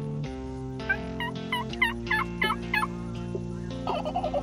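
Wild turkey calling: a quick series of about seven calls, roughly three a second, starting about a second in, with another call beginning near the end.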